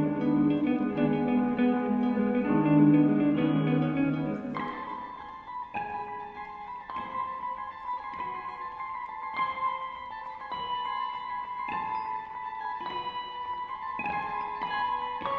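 An ensemble of eight electric guitars playing a percussion piece. For the first four and a half seconds the guitars play a dense, full chordal texture; then it thins suddenly to sparse high notes plucked one at a time that ring on.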